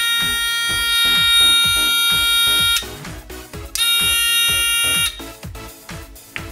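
A small battery-powered electronic buzzer sounding a steady high-pitched tone for nearly three seconds, stopping sharply, then sounding again for just over a second, over background music with a steady beat.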